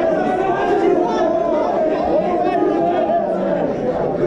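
Spectators' voices talking and calling out over one another, a steady babble of crowd chatter.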